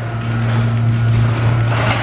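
Garage door opener motor running as the door goes up: a steady low electric hum.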